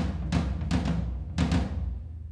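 Electronic drum pads triggering synthesized, pitched drum sounds through Ableton and a modular synth: four heavy hits in an uneven rhythm, each with a ringing low tone, fading away near the end.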